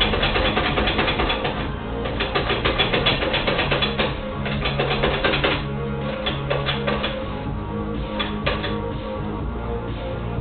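Quick repeated rasping strokes of a yam being pushed across a mandoline slicer's blade, cutting thin slices; the strokes come thickly at first and thin out in the second half. Music plays underneath.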